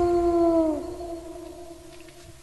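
Wolf howl sound effect: one long held note that drops in pitch about three-quarters of a second in, then fades away with an echoing tail.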